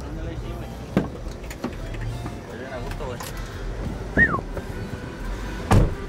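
Knocks and bumps of a person climbing into a passenger van, with a loud thud near the end, over a low steady hum.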